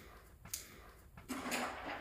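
A few faint clicks of a dog's claws on a hardwood floor as it trots away, with a soft rustle in the second half.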